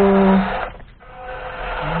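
WPL D12 RC pickup's small brushed electric motor and gearbox whining as it reverses. The whine holds a steady pitch, cuts off about half a second in, then rises in pitch again near the end as the throttle is reapplied.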